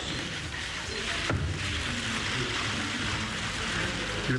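Steady ambience of a ceremony hall during the oath signing: an even, fine hiss-like patter with a faint low murmur beneath and one brief click about a second in.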